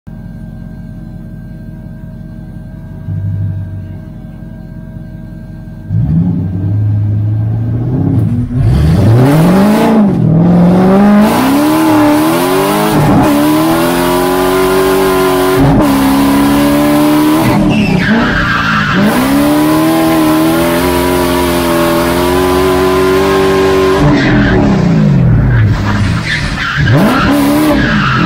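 BMW E46 drift car's engine idling at the start, blipped once about three seconds in, then pulling away at about six seconds and driven hard. The revs climb and drop sharply again and again, with tyre squeal in places as the car slides.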